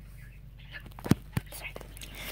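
Two sharp knocks about a second in, a quarter of a second apart, over faint handling noise, followed by a whispered word.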